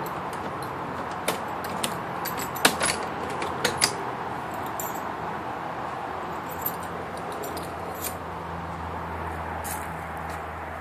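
Sharp metallic clicks and rattles, bunched about one to four seconds in, as the 1967 Mustang's door latch is worked and the door swung open, with a few lighter clicks later, over a steady background rush.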